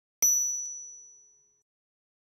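A single bright bell-like ding, struck once about a fifth of a second in and fading out over about a second.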